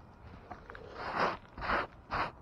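Gloved hand brushing sawdust across an RV roof: two short scraping sweeps in the second half, after a quiet start.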